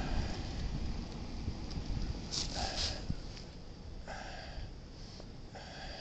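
Wind on the microphone with a steady low rumble of street traffic, and three short hiss-like sounds near the middle and end.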